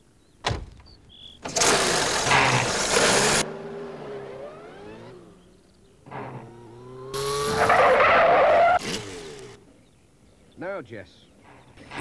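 Cartoon van sound effects: a single sharp click, then a small van's engine pulls away with a loud burst of engine and road noise that cuts off suddenly. About seven seconds in the van is heard again, its engine rising in pitch as it speeds along, before it fades.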